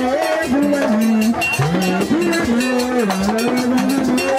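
Several voices singing a ceremonial Vodou chant in long held notes that slide between pitches, with a rattle shaking steadily under them.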